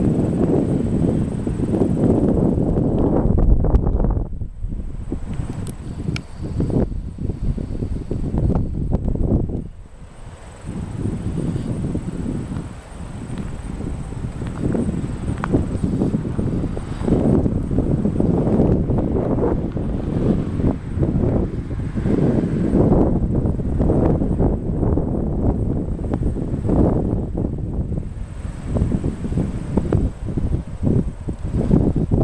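Wind buffeting the microphone in uneven gusts, a low rumbling noise that drops away briefly about ten seconds in.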